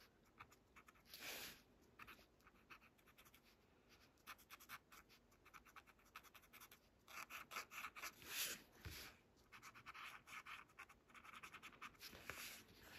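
Paper tortillon (blending stump) rubbed over graphite shading on a paper tile to soften it: faint, quick, scratchy strokes, denser about a second in and again from about seven to nine seconds in.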